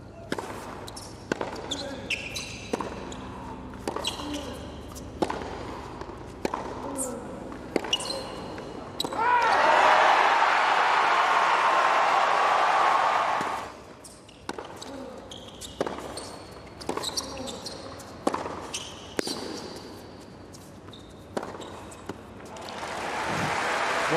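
Tennis rallies on a hard court: sharp racket strikes and ball bounces at an irregular pace. The crowd cheers and applauds loudly for about four seconds after the first point. The crowd noise builds again near the end after the second point.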